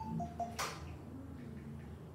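A single sharp click about half a second in, over a steady low hum of the room.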